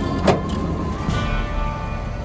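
BedSlide sliding cargo tray, loaded with tires, rolling out of a pickup bed with a steady low rumble. There is one sharp clack about a third of a second in, with music underneath.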